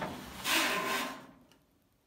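Mesh lint screen of a Kenmore clothes dryer being pulled up out of its slot in the dryer top: a click, then a scraping rub of plastic sliding against plastic for about a second that fades out.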